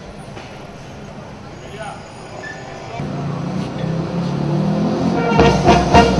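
Low outdoor background with faint voices, then from about three seconds in band music starts up and grows louder, with drum beats coming in near the end, accompanying a flag being hoisted.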